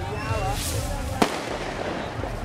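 A single sharp firecracker bang about a second in, over people talking and street noise.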